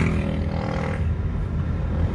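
A steady low rumble in the background, with a soft breathy hiss that comes in about half a second in and fades by the middle.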